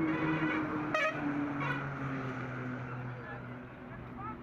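Roadside noise at a vehicle crash scene: people's voices over a steady low vehicle engine hum, with a brief horn toot about a second in.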